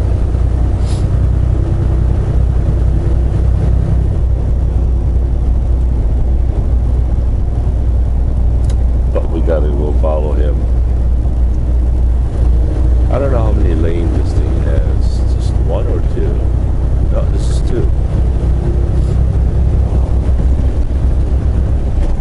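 Semi truck cruising at highway speed, heard from inside the cab: a steady low drone of the diesel engine and road noise, with a voice murmuring about nine to seventeen seconds in.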